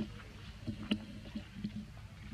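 Dry leaf litter rustling and crackling as macaques shift about on it, with one sharp crackle about a second in, over a steady low hum.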